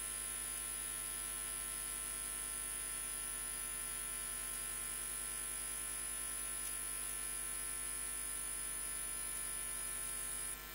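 Steady electrical hum with a constant high-pitched whine on the recording line, unchanging throughout.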